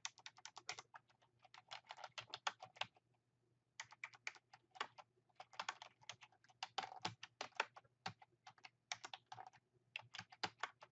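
Typing on a computer keyboard: quick runs of key clicks, with a short pause about three seconds in.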